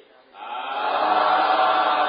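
A group of voices chanting together in unison, a sustained chant that swells in about half a second in and holds loud.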